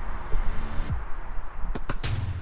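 Wind rumbling on a handheld camera's microphone outdoors, with a low hum that slides down. Two sharp knocks come near the end as background music begins.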